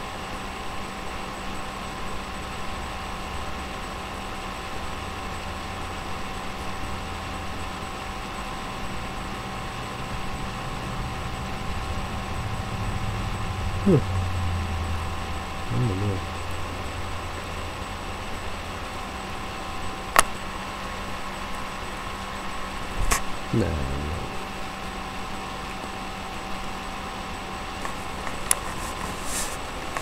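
Steady low room hum, with a few faint brief vocal murmurs and two sharp clicks about two-thirds of the way through.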